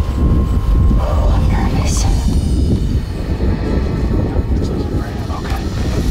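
A man whispering briefly over a steady low rumble.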